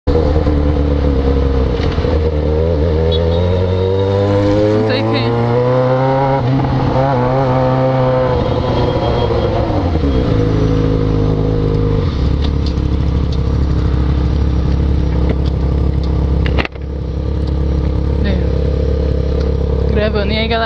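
Yamaha XJ6 inline-four motorcycle engine through a gutted stock exhaust, rising in pitch for several seconds as the bike accelerates, falling back as it slows, then running steadily. The sound cuts out briefly near the end.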